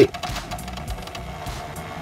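Paperang pocket thermal printer running as it prints a photo: a steady motor buzz as the paper feeds out.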